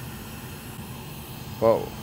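A steady background hiss, with a man saying "Well" near the end.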